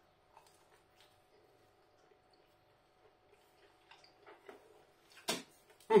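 Faint mouth sounds of a man chewing a bite of pizza: scattered soft clicks and squelches, with one short, sharp sound near the end.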